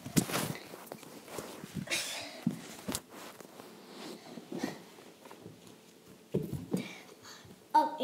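Bumps, rustles and scrapes of a phone camera being handled and set down, with scattered short knocks and shuffling on a hardwood floor.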